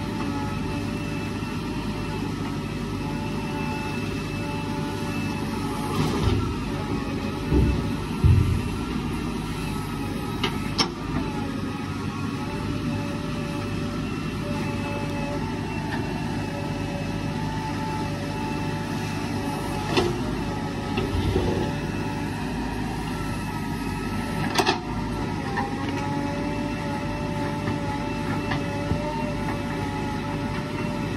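JCB 3DX backhoe loader's diesel engine running steadily under load with a steady whine, as the backhoe bucket digs into stony earth. Several sharp knocks and scrapes come from the bucket working the soil, the loudest about a quarter of the way in and again near the end.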